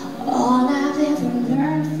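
A woman singing a slow melody live, with long held notes that glide between pitches, accompanied by her own acoustic guitar.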